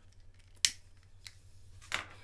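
A few short clicks: one sharp, loud click about half a second in, then two fainter ones later, over a faint steady low hum.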